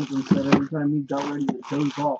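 Speech only: a woman's voice talking.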